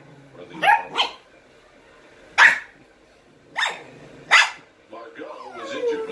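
Shetland sheepdog barking sharply, five barks over the first four and a half seconds, then a lower, wavering sound near the end.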